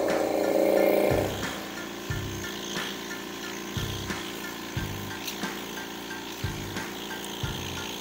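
Gutstark 50-litre oil-free air compressor, a 1 hp motor driving two piston heads, running steadily with its intake silencer filter off. It gets noticeably quieter about a second in, while the black silencer filter is pushed onto the pump head's intake.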